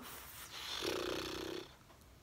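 A woman's voice pausing mid-sentence: a soft breath, then a low, creaky 'hmm' lasting under a second while she tries to recall a number.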